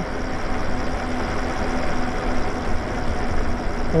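Wind and road noise from riding a Lyric Graffiti electric bike: a steady rumble of air and tyres on asphalt, with a faint steady hum underneath.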